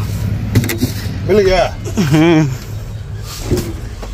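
A vehicle engine runs with a steady low rumble that fades after about two and a half seconds. A couple of sharp metal clicks come about half a second in as the truck's cab door is opened. In the middle there are two short voice-like calls with a wavering pitch.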